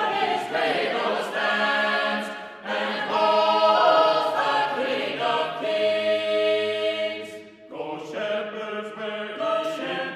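Unaccompanied choir singing a shape-note carol in several-part harmony, in held phrases with short breaks about two and a half and seven and a half seconds in.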